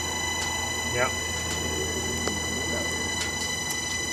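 Wood pellet furnace rig running: a steady low machine hum with a thin, steady high-pitched whine over it, and a single sharp click a little past the middle.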